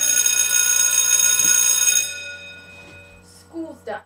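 School bell ringing loudly for about two seconds, then dying away: the bell for the end of the school day.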